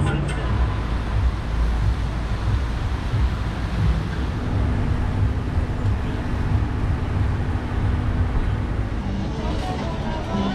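City street traffic noise: a steady low rumble of passing vehicles on a wet road, with a steady engine-like hum joining about four seconds in.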